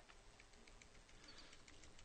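Faint, irregular clicks of laptop keyboard keys being pressed, several taps over two seconds.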